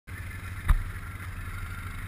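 Can-Am Outlander ATV engine running steadily at low speed, heard from the rider's seat, with a single sharp thump about two-thirds of a second in.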